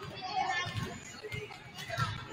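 Several basketballs bouncing on a hardwood gym floor in an irregular patter of low thumps, mixed with young players' voices and chatter. A sharper knock comes near the end.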